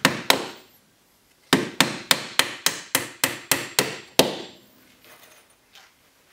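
Claw hammer driving nails into the wooden top bars of beehive frames held in an assembly jig. A couple of blows come first, then a quick, even run of about ten strikes at roughly three a second, ending with one harder blow past the fourth second.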